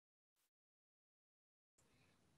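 Near silence: the call's audio is gated to nothing, with only a very faint hiss coming back near the end.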